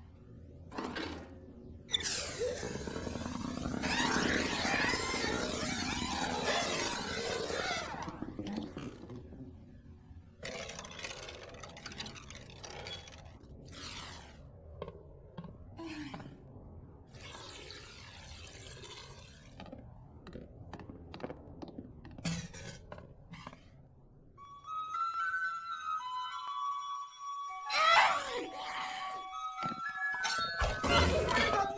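Soundtrack of an animated series: a loud rushing noise lasting several seconds near the start, then scattered knocks and thuds, with music carrying a melody entering in the last few seconds.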